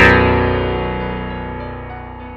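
MIDI piano playback: an enormous chord spanning nearly every key sounds at once right after a fast downward run, then rings on and fades steadily.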